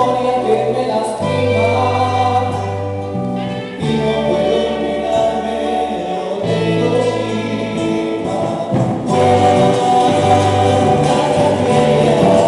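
Andean folk ensemble playing live: several men's voices singing together over strummed acoustic guitars, a charango and an electric bass holding low notes that change every second or two.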